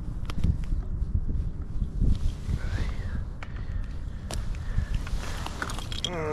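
Wind buffeting the microphone in a low, gusting rumble, with a few scattered sharp clicks and knocks.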